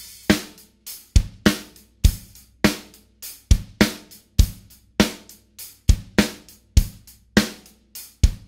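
Rock drum beat on a DW drum kit with Zultan cymbals: kick drum and hi-hat in a steady pattern, with the snare played as rim shots. The rim shots give the snare a sharp attack and make it about two to three times louder than a plain skin hit, so it stands well above the hi-hat.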